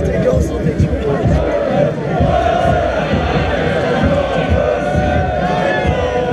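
Large carnival crowd packed close around, many voices singing, chanting and shouting together, with band music mixed in.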